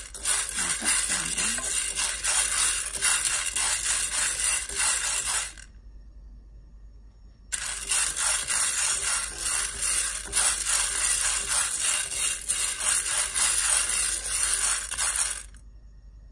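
Dry mung beans rattling and scraping against a pan as they are stirred with chopsticks during dry-roasting, a dense run of tiny clicks. It stops for about two seconds midway, then resumes until near the end.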